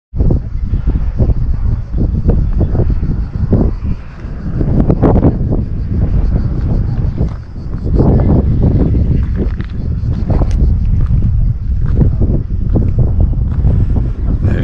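Wind buffeting the camera microphone: a loud, gusty rumble that swells and dips from moment to moment.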